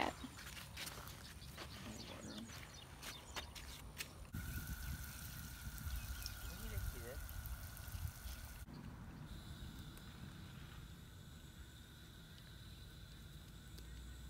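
Garden hose spray nozzle misting seedlings, a steady hiss lasting about four seconds in the middle, between quieter stretches of outdoor background with a few light taps at first.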